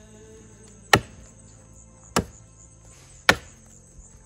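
Axe chopping into a standing tree trunk: three sharp wooden strikes about a second apart.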